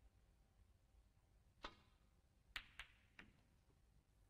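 Snooker cue and balls clicking: one sharp click, then about a second later three more in quick succession.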